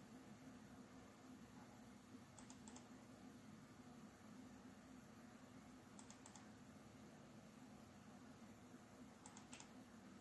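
Faint computer-mouse clicks, three quick pairs a few seconds apart, over a low steady hum. Each click steps the dish's azimuth offset down by 0.1 degree.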